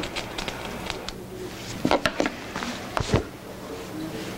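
Scattered light clicks and small knocks of objects being handled on a lab bench while a candle is being lit, with one louder knock about three seconds in.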